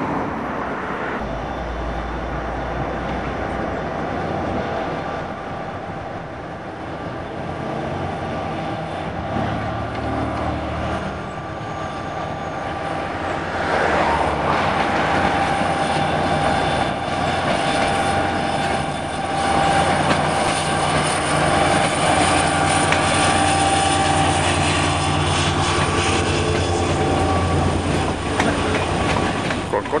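Renfe series 334 diesel-electric locomotive hauling passenger coaches, its engine a low steady hum as it approaches. Later the train runs slowly through station tracks with a steady high squeal from the wheels as the coaches pass.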